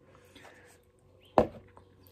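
A single sharp knock a little past halfway: a large plastic snack tub being set down on a table.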